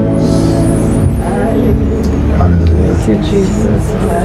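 Several indistinct voices praying and murmuring at once, over soft background music and a steady low rumble.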